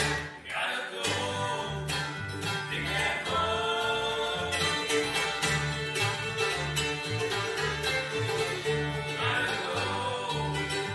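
Bluegrass band playing an instrumental break between sung verses, the fiddle taking the lead over banjo, guitar, mandolin and a pulsing upright bass, with a brief drop in level just after the start.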